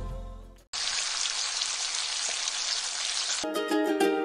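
Food sizzling in a frying pan: a steady, even hiss that starts abruptly just under a second in and cuts off near the end. Music fades out before it and comes back after it.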